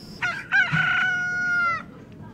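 A rooster crowing once, played as a comic sound effect: a short broken start, then one long held note that falls away near the end.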